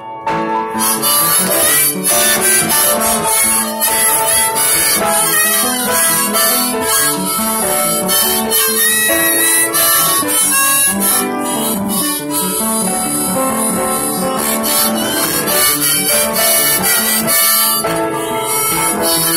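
Harmonica solo played in a neck rack over piano accompaniment, an instrumental break between sung verses, starting just after a brief pause at the very beginning.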